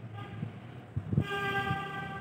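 A horn-like steady tone with overtones starts about a second in and holds, after a short low knock.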